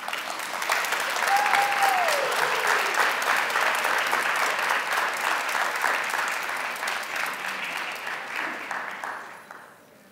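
Audience applauding: a dense, steady clapping that starts at once and dies away near the end. A short falling tone rises above the clapping about a second and a half in.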